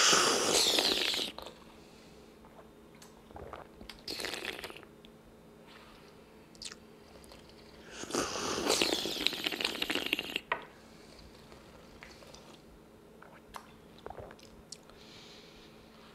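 Tea being slurped from small tasting cups, drawn in noisily to aerate it over the tongue. There is a burst right at the start, a short one about four seconds in, and a long slurp from about eight to ten seconds, with small lip and cup clicks between.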